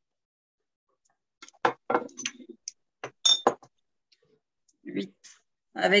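A few short clicks and clinks from kitchen items being handled, one with a brief high ring like metal or glass being tapped, heard through a video-call connection that cuts the sound to silence between noises.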